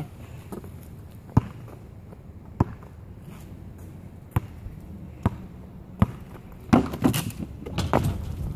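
Basketball bouncing on an asphalt street, single sharp knocks roughly a second apart, then a quicker cluster of louder knocks about seven seconds in.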